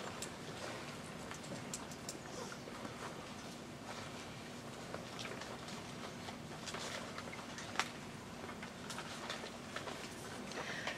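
Hushed room tone of a large seated audience: a steady low hum with scattered faint clicks and rustles, one sharper click near the end.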